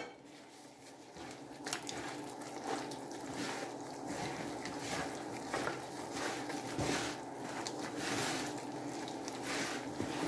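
Gloved hand kneading melted butter and milk into flour in a plastic bowl: quiet, irregular squishing and rustling of the wet dough.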